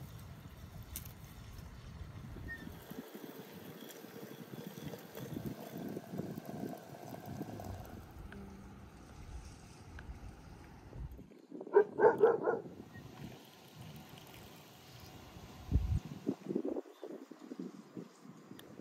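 Tea being poured from a glass teapot into small tea glasses, with a quick run of about four loud, sharp, ringing sounds about twelve seconds in, and a few softer ones near the end.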